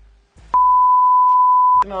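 Censor bleep: a single steady, high-pitched beep a little over a second long, cut in and out sharply, with a man's voice coming back as it ends.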